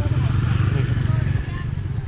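Small motor scooter's engine running as it passes close by, a low fast pulsing that drops away about one and a half seconds in.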